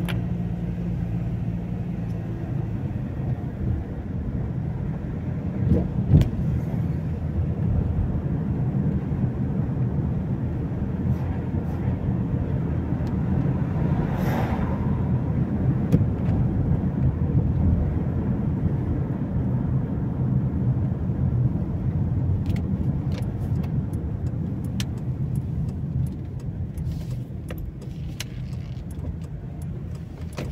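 Car interior noise while driving slowly through town: a steady low engine and tyre rumble. There is a brief swell about halfway through and a few light clicks in the last several seconds.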